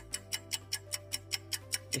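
A quiz countdown timer's clock-tick sound effect: fast, even ticking at about four ticks a second, over soft background music.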